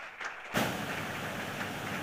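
Audience applause in a conference hall, heard as a steady, even wash of clapping that comes in suddenly about half a second in.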